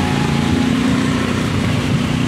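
A steady low engine hum under a noisy hiss.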